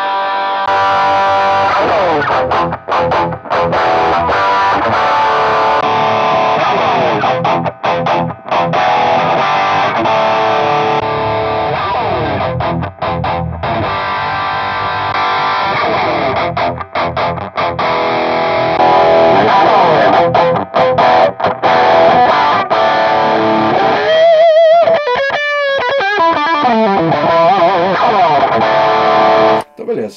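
Distorted electric guitar played through a Marshall JMP-1 preamp, ADA power amp and a Two Notes Torpedo Live simulating a Mesa Boogie 1x12 cabinet: a lead-style passage with gliding bends and short breaks between phrases. Near the end the pitch wobbles widely in a heavy vibrato.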